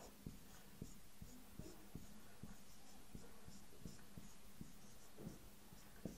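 Marker pen writing on a whiteboard: a faint run of quick taps and short scratchy strokes as letters are drawn.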